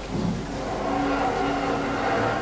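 A man's voice holding a long, steady note in melodic Quran recitation, starting about half a second in with a slight step in pitch midway.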